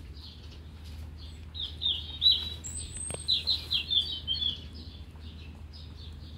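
Small songbirds chirping: fainter chirps throughout, building to a quick, louder run of high chirps in the middle, with one sharp click about three seconds in.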